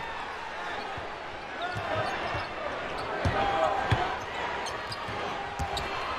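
A basketball bounced on the hardwood court, a few irregular thumps, over the steady murmur of the arena crowd.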